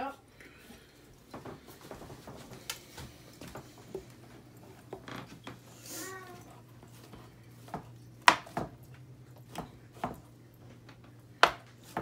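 Kitchen knife cutting mushrooms on a cutting board: irregular knocks of the blade against the board, the sharpest ones in the second half, over a steady low hum.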